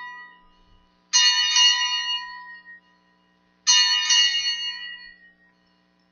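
Altar bell rung at the elevation of the host after the consecration. An earlier ring dies away, then it rings twice more, a little over a second in and again near the middle, each ring fading out over about a second and a half.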